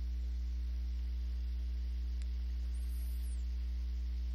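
Steady low electrical mains hum in the audio chain, with a few fainter steady overtones above it and light hiss. It does not change at all.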